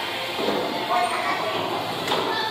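Bowling alley din: a steady rumble of bowling balls rolling down the lanes, with voices mixed in.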